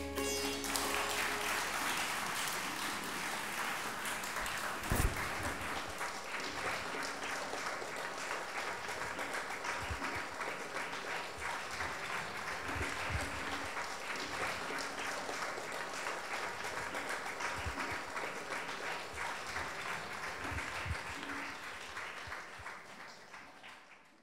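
Audience applauding steadily after the last sitar notes ring away in the first second; the clapping fades out near the end.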